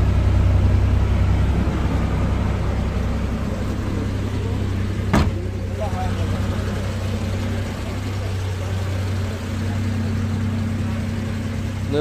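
A car engine idling steadily, with a single sharp knock about five seconds in.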